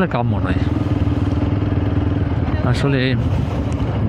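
TVS Apache RTR 160 4V motorcycle's single-cylinder engine running steadily while riding at about 30 km/h.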